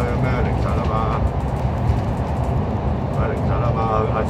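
Steady low rumble of a KMB double-decker bus's engine and tyres heard inside the cabin as it drives through a road tunnel, with indistinct voices during the first second and again near the end.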